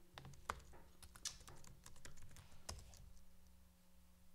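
Faint typing on a computer keyboard: irregular single keystrokes and clicks.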